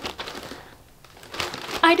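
Wrapping paper on a gift-wrapped box crinkling in short rustles as the box is handled, with a quieter gap around the middle.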